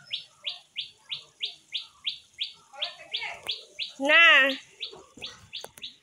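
A bird calling a short, high chirp over and over, evenly, about three times a second.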